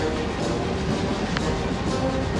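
Several tracked M113 armored personnel carriers driving past in a column, a steady rumble of their engines and tracks.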